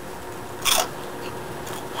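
A single crunch of someone biting into a crunchy snack chip, short and sharp, about two-thirds of a second in.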